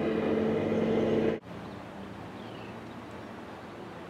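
Steady low engine drone that cuts off suddenly about a second and a half in, leaving faint, even outdoor background noise.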